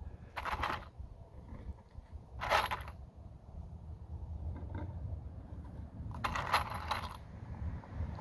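Metal wood screws rattling in a small plastic tub as they are picked out by hand, in three short bursts, the last one longer.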